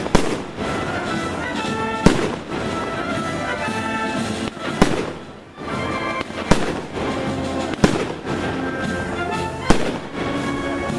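A wind band playing while firecrackers go off, six sharp single bangs at uneven gaps of one to three seconds, loud over the music. The band briefly thins out about halfway through.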